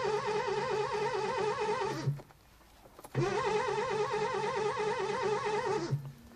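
A car engine being cranked on its starter motor with an even, pulsing churn, twice, without catching. The first attempt cuts off about two seconds in and the second starts a second later, stopping near the end.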